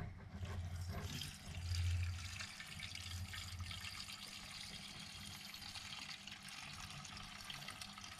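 Petrol pouring from a bottle's flexible spout into the plastic fuel tank of a 1/5-scale Kraken Vekta.5 RC car, a steady liquid fill that is a little louder in the first couple of seconds.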